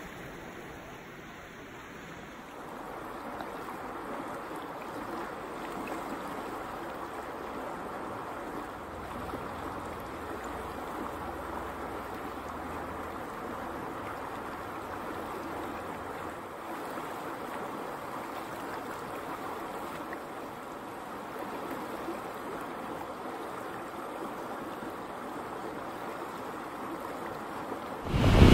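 Steady rushing of a fast-flowing mountain river, its water running over and around rock ledges.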